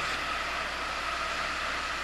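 Steady outdoor background noise, an even hiss with no distinct events, in a pause between a speaker's sentences.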